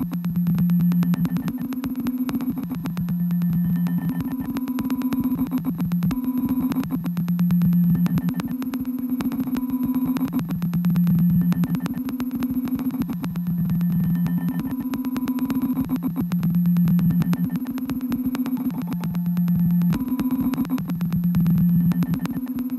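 Live improvised electronic music. Two low droning notes alternate every second or so, under a dense stream of fast clicks and a thin, steady high tone. The loudness swells and falls every few seconds.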